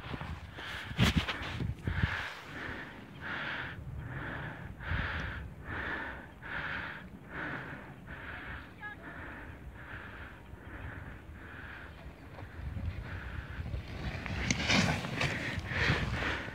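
Rapid, heavy breathing close to a phone microphone, a soft breath about every three-quarters of a second. Near the end a louder, rougher rush of noise comes in as the phone is moved.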